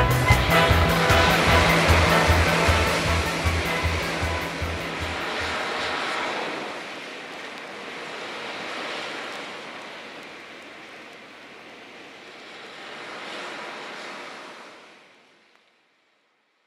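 Ocean surf sound effect, waves swelling and washing back, over the tail of the band's music, whose beat stops about six seconds in. The surf swells twice more and fades out shortly before the end.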